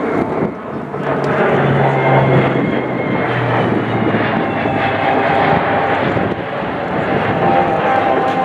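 A Lockheed Martin KC-130J Hercules's four six-bladed turboprops drone loudly as it banks low overhead. A high whine in the engine sound slowly falls in pitch as the aircraft passes.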